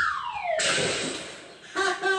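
Sound effects on a recorded children's audio story: a falling whistle-like glide joined about half a second in by a rushing hiss that fades away, then a voice begins near the end.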